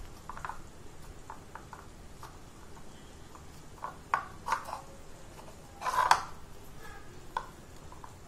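Fingers squishing and scraping through a thick cornstarch-and-water mix (oobleck) in a plastic bowl, in short, soft, irregular strokes, the loudest a brief scrape about six seconds in.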